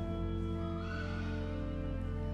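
Pipe organ, the church's Foley-Baker organ, playing a prelude in sustained held chords, with a change of chord at the start.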